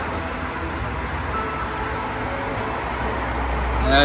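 LPG dispenser pump running with a steady low hum and noise while the filling has nearly stopped, the tank's automatic fill stop having cut the flow. The hum swells a little near the end.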